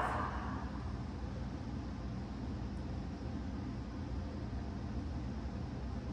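Steady low hum and hiss of room background noise, with no speech and no distinct events.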